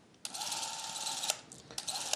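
Clockwork (spring-wound) movie camera mechanism running: a steady whirr for about a second that stops abruptly, followed by a few short clicks.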